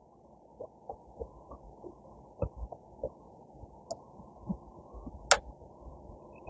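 Chopstick prodding coarse, gritty bonsai soil in a pot to settle it into an air pocket around the roots: a run of faint, irregular clicks and crunches of grit, with one sharper click about five seconds in.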